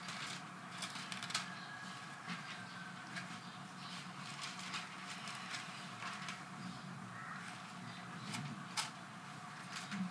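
Scattered soft rustles and small clicks of Bible pages being turned as the congregation looks for the passage, over a faint steady hum.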